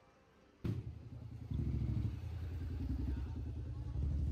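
A small engine running with a low, rapid chugging that cuts in suddenly about half a second in and grows louder after about a second and a half.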